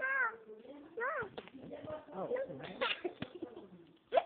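Young children's high-pitched voices squealing and crying out in short bursts during rough play, with a few brief knocks from the phone being handled.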